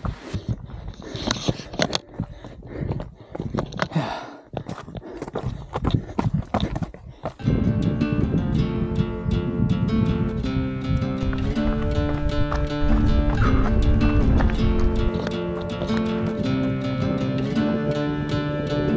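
Footfalls of a runner on a rocky mountain trail, irregular and uneven, for about the first seven seconds. Then background music starts and plays on.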